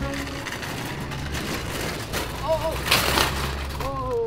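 Loaded shopping cart rolling over wet asphalt, a steady rumble and hiss from its wheels. About three seconds in comes a loud, brief scraping skid as the cart is swung into a drift.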